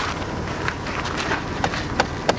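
Wind noise on the microphone, with a few faint short clicks about a second apart. No horn tone sounds.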